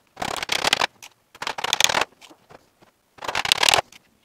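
Three short bursts of rapid hammer taps driving round-headed inch nails through the sheet-metal tin of a wooden beehive roof.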